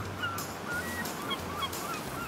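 Beach ambience: a steady wash of surf with short, scattered bird calls over it.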